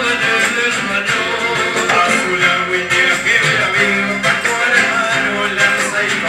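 Live band music led by two acoustic guitars, one a nylon-string classical guitar, playing continuously at a steady, loud level.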